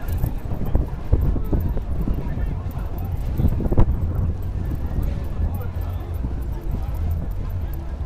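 Wind rumbling on the camcorder microphone, with indistinct voices in the background and a few irregular knocks, the loudest nearly four seconds in.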